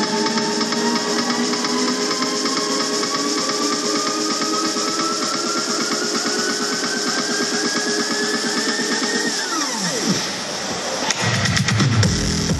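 Electronic dance music played over a PA in a DJ set, in a build-up: a synth tone rises slowly in pitch over a fast repeating beat with the bass cut out. About nine seconds in the tone swoops sharply down, there is a brief lull, and the drop hits near the end with heavy bass returning.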